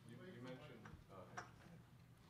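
Faint speech in a quiet room, with a single sharp click about one and a half seconds in.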